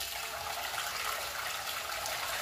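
Pump-fed water rushing steadily through a mini high banker sluice and splashing down into its tub, the machine just started up and running.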